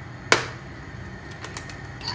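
A raw egg knocked once against the rim of a ceramic bowl to crack it: one sharp knock about a third of a second in, then a few faint clicks as the shell is pulled open.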